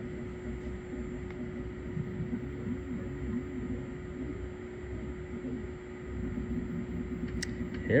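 Steady electrical hum over a low room rumble, with a faint, indistinct voice in the middle. A single sharp click sounds just before the end.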